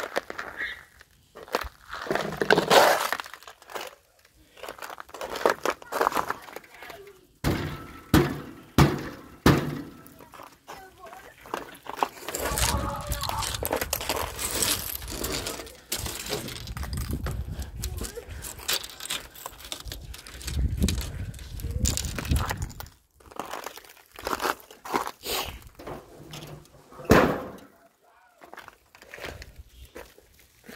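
Slabs of ice cracking and shattering on pavement: a string of sharp breaks and thuds, with a stretch of low rumbling noise in the middle.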